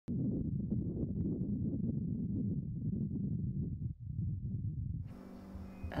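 Wind buffeting the microphone outdoors: an uneven low rumble in gusts that cuts off abruptly about five seconds in.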